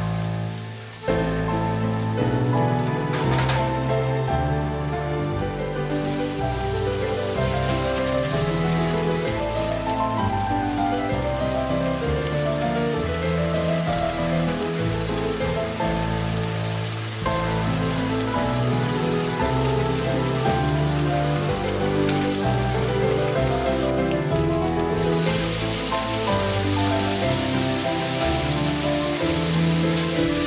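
Finely chopped onion and cumin seeds sizzling in hot oil in a wok, over background music; the sizzling grows louder about five seconds before the end.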